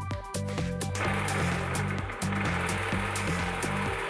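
Electronic background music with a steady, rhythmic bass beat. From about a second in, a jigsaw with its blade tilted on the guide runs freely underneath it, a steady motor-and-blade noise without cutting.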